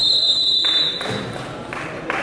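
A single high, steady signal tone lasting about a second, over the murmur of voices and noise in a gym.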